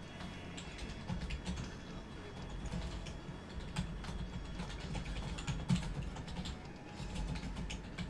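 Typing on a computer keyboard: short, irregular key clicks.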